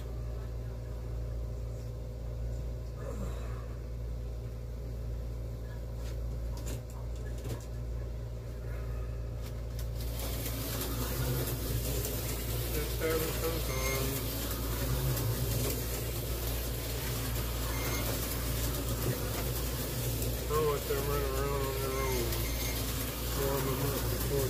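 Tyco 440-X2 HO slot cars running on the track, their small electric motors whirring over a low steady hum; the whirring hiss grows markedly fuller about ten seconds in and holds.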